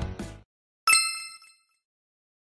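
Intro music stopping half a second in, then a single bright ding sound effect that rings briefly and dies away.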